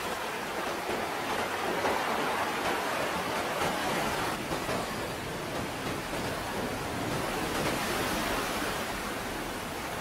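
Steady rushing noise with no music or voice, like rain or running water, spread evenly without any tone or rhythm.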